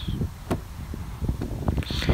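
The 2017 BMW X3's door locks clicking once, a single sharp click about half a second in after the outer side of the door handle is touched to lock the car, followed by a few fainter ticks. Wind rumbles on the microphone throughout.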